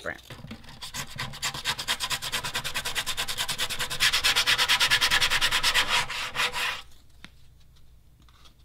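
60-grit sandpaper rubbed by hand across the plastic wall of a bucket in quick back-and-forth strokes, roughing the surface around a crack to prepare it for bonding. The strokes grow louder about halfway through and stop about a second before the end.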